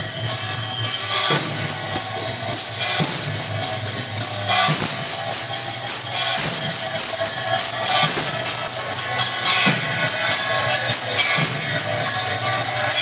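Devotional arati percussion: small brass hand cymbals (kartals) ringing continuously over khol drum strokes, with a heavier stroke about every one and a half to two seconds.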